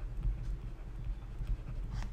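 A stylus tapping and scratching on a pen tablet as words are written, heard as light irregular knocks over a steady low hum.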